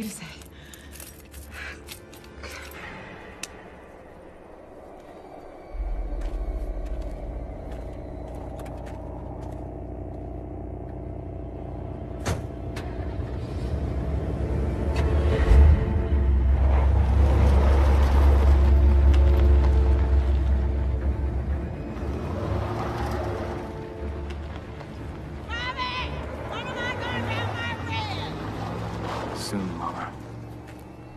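Film soundtrack: a sustained, tense music score over a deep low rumble that comes in about six seconds in, swells to its loudest in the middle and then eases off.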